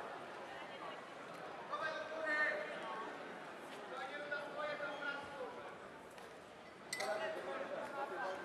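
Indistinct voices calling out in a large hall, in short spells, with one sharp click about seven seconds in.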